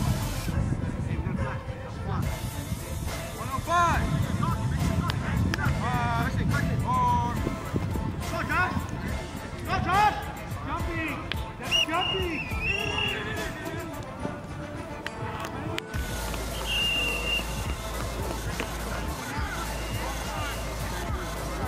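People shouting on and around a flag football field during a play, over music playing. The shouting thins out abruptly about sixteen seconds in, and the sound beneath changes.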